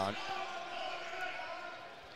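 Crowd murmur echoing in a gymnasium during live basketball play, with a basketball being dribbled on the hardwood court.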